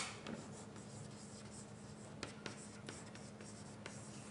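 Chalk writing on a blackboard: faint scratching strokes with several sharp taps of the chalk against the board, over a steady low hum.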